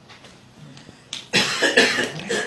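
A man coughing, a short run of harsh coughs starting a little past halfway, after a quiet first second.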